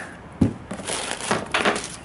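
Cardboard shoe box being opened by hand: a sharp tap, then crinkling and rustling of paper as the printed leaflet and wrapping paper inside are handled.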